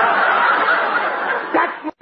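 Studio audience laughing, one long swell of laughter that cuts off abruptly near the end, heard through the narrow, muffled sound of an old radio broadcast recording.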